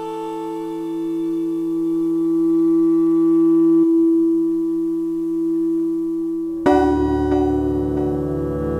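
Ambient synthesizer music: one long, pure held tone that slowly swells, then a fuller, louder chord with a deep bass enters suddenly near the end.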